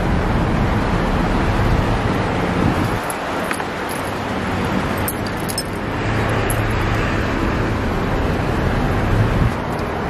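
Rustling and rubbing of ribbed shirt fabric against a phone's microphone, over a steady low rumble of vehicle traffic, with a few faint clicks.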